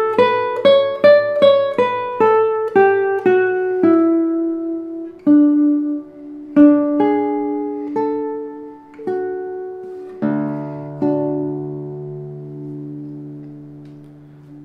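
Kenny Hill double-top classical guitar (spruce top over cedar) with normal-tension nylon strings, played as a quick run of plucked single notes on the second string that climbs and then falls, followed by slower, longer-ringing single notes. About ten seconds in a fuller chord is struck and rings out, fading slowly.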